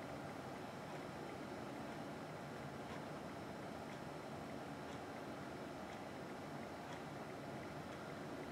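Faint steady background noise of a small room, with a few faint, soft ticks.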